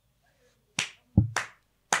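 Four short, sharp clicks or slaps spaced about a third to half a second apart, starting a little under a second in, one of them with a dull low thump.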